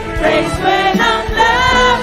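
Live worship band playing a praise song: a female lead singer with backing singers, over drums and keyboard, with drum hits every half second or so.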